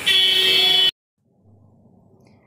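A vehicle horn sounding one loud, steady blast in street traffic for just under a second, cut off abruptly, followed by a faint low hum.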